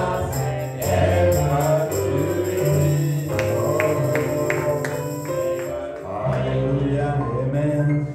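Gospel music: singing voices over a steady bass line, with a run of sharp percussion hits in the middle.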